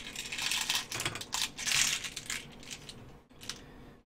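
Small metal fishing sinkers clicking and rattling as they are tipped from a small plastic tub into a 3D-printed plastic compartment. The clatter thins out after about two and a half seconds.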